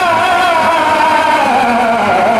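A man reciting a naat in long held sung notes through a microphone. The pitch wavers slightly and slides down about one and a half seconds in.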